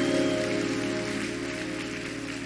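Soft background music from a live worship band: sustained held chords under a light airy hiss, slowly fading.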